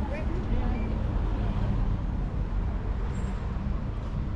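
City traffic noise: a steady low rumble of passing road vehicles, with faint voices of passers-by about the first half second.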